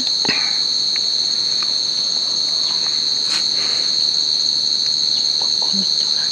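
Insects trilling: a steady, high-pitched, unbroken chorus, with a few faint clicks.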